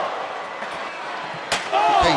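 Steady arena crowd noise from a televised wrestling ladder match, then a single sharp slam about one and a half seconds in.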